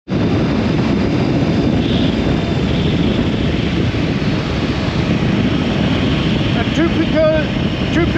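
Steady wind and road noise from a motorcycle riding at speed on a paved road, wind rushing over the microphone. A man's voice starts speaking near the end.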